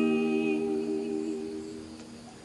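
The final strummed acoustic guitar chord rings out while two women's voices hold a hummed note together, the sound fading away over about two seconds.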